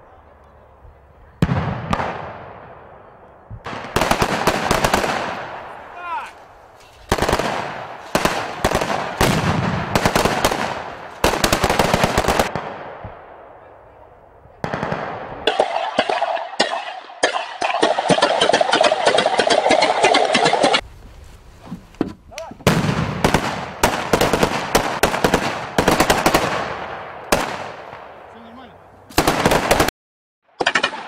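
Repeated bursts of automatic gunfire from Kalashnikov rifles and a tripod-mounted PKM machine gun. Short bursts come with gaps, and each dies away in a fading echo. A longer run of continuous fire lasts about five seconds past the middle.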